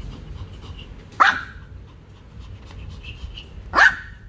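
Pomeranian giving two sharp barks, about two and a half seconds apart, barking for a plush toy held in front of it.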